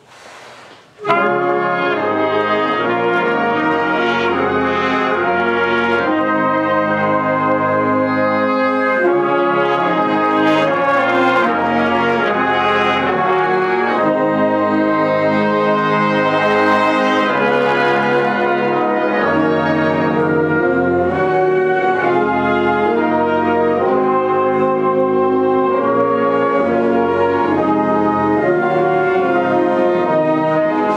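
Wind band, brass and flutes together, playing sustained chords in rehearsal, coming in together on the conductor's downbeat about a second in and holding at a steady full level.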